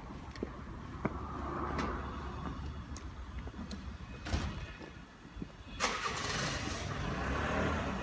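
Motor vehicle engine running on the street, over a steady low traffic rumble; a louder wash of engine and road noise comes in suddenly about six seconds in.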